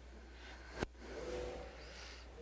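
A single sharp click a little under a second in, over a steady low electrical hum.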